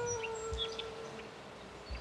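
Background music: a held flute note that slowly fades away, with a few faint high chirps above it.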